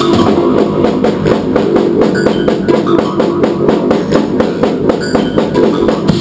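Loud live music: a drum kit played in a rapid, dense beat over sustained low synthesizer tones.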